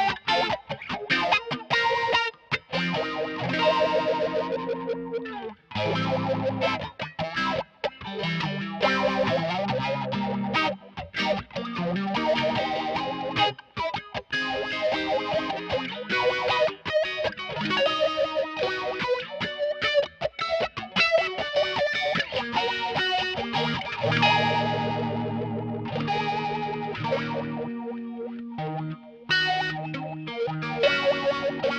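Electric guitar, a custom Jazzmaster, played through a Mu-Tron III / Lovetone Meatball-style envelope/LFO filter pedal into a Yamaha THR10 amp, the filter sweeping each note and chord. The playing comes in phrases broken by brief stops.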